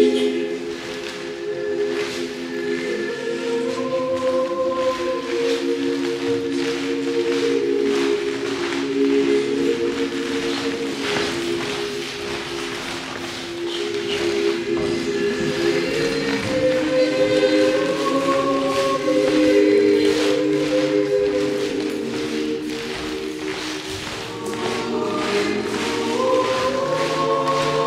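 Slow choral church music: several voices or parts holding long chords that change every few seconds.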